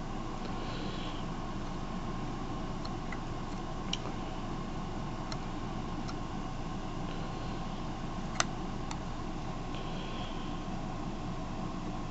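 Clear plastic canopy and bricks of a brick-built model being handled, giving a few short, faint plastic clicks over a steady background hum; the sharpest click comes about eight seconds in.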